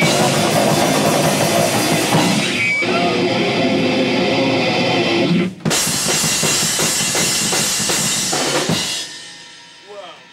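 A hardcore punk band playing loud and fast through amplifiers, with distorted guitar, bass and a drum kit. The music cuts out for an instant about five and a half seconds in, comes back, and the song ends near the end, the sound dying away.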